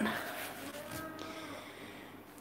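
A faint, drawn-out low call in the background, lasting about a second and a half.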